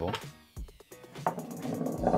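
A few light knocks and a faint rolling sound from a model guillemot egg rolling across a tilted tabletop, under quiet background music.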